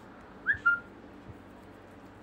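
A short, high whistled chirp about half a second in: a quick upward slide, then a brief held note. It rises above a steady low background hiss.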